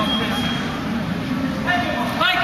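Murmur of spectators' voices in a sports hall. A steady high tone stops about half a second in, and a voice calls out near the end.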